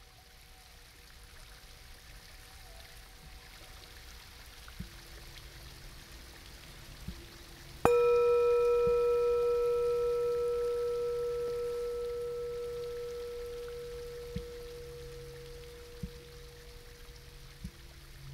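A crystal singing bowl struck once about eight seconds in. Its clear, pure tone wavers slowly and dies away over about ten seconds. Under it is a faint steady hiss with a few soft clicks.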